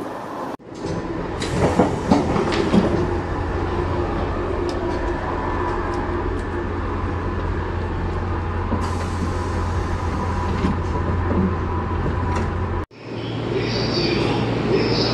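Running noise inside a moving JR East 185 series electric train car: a steady low rumble with scattered clicks from the wheels and car body. Near the end it cuts abruptly to a station platform.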